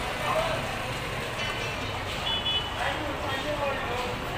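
Busy market-street ambience: a steady din of distant voices and traffic, with several short, high horn beeps from the vehicles about one and a half, two and a quarter and three and a quarter seconds in.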